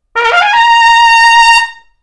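Trumpet played loud: a quick rising run of about an octave that lands on a held high C, sustained for about a second before it stops.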